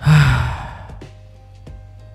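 A man's heavy sigh, loud at the start with a falling voiced tone and dying away within about half a second, over faint background music.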